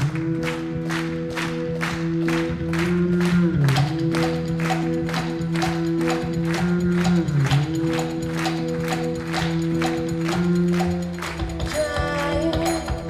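Live mantra music from a band: a sustained chord of low notes that dips in pitch together every few seconds, under a steady beat of sharp hits about two a second.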